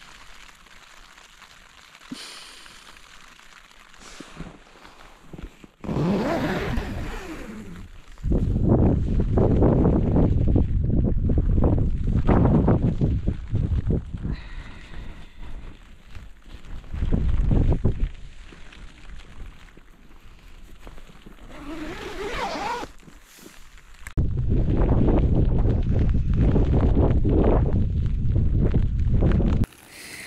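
Wind gusting hard against the microphone outside on open moorland, a loud low rumbling buffet in two long stretches, the second near the end.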